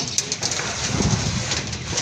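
Long steel bars being handled and loaded onto a motorcycle sidecar: a few light clicks in the first half second, then some low thumps about a second in, over a steady hiss.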